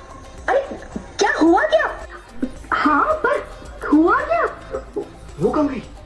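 A person crying aloud on stage, about five wailing sobs that rise and fall in pitch, with short gaps between them.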